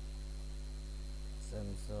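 Steady electrical mains hum in the recording, with a thin high whine above it. A man speaks a brief word or two near the end.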